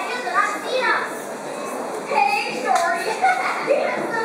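Choral speaking: a large group of school students reciting a text together in unison, their voices moving through the phrases as one.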